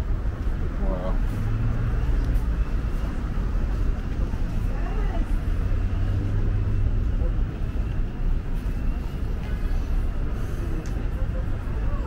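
Steady low rumble of city traffic, with faint voices of passers-by briefly about a second in and again around five seconds.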